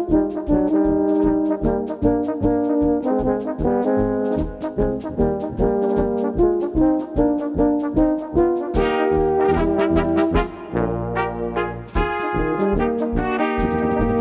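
Low-brass band of tubas and baritone horns with drum kit playing a fast Bohemian polka (Schnellpolka), the bass marking each beat under the melody. About eleven seconds in the beat stops for a held low note, then the polka picks up again.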